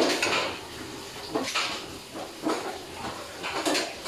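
Steel farrowing-crate bars clattering in a few short knocks, about one a second.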